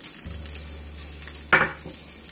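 Hot oil from the tadka sizzling and crackling on the surface of the dal in the pot. One short, louder sound comes about one and a half seconds in.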